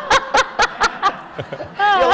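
Laughter in quick repeated ha-ha pulses, about five a second, dying away about a second and a half in.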